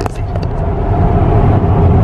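Steady low rumble of road and tyre noise inside a moving car's cabin.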